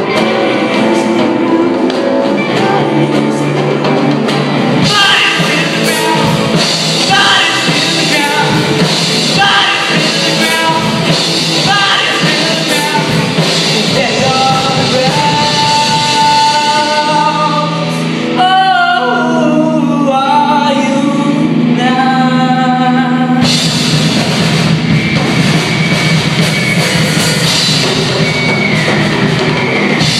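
A live rock band playing a song, with a lead vocal over guitars and a drum kit.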